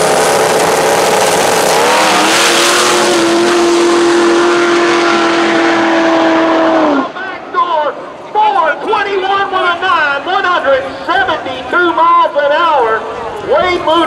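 Rail dragster's Duramax V8 turbodiesel at full throttle on a drag-strip pass. Its pitch bends briefly about two seconds in, then holds steady until the sound stops abruptly about halfway through. Men's voices follow for the rest of the time.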